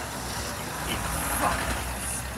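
A vehicle engine idling: a steady low rumble.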